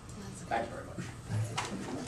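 Lull in a meeting room: brief, faint voice sounds and murmur, with no sustained speech.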